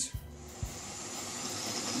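Electric drill driving a homemade wood lathe, running slowly under a sewing-machine foot-pedal speed control. Its whirring grows steadily louder as the speed is brought up. Two soft low knocks come about half a second apart near the start.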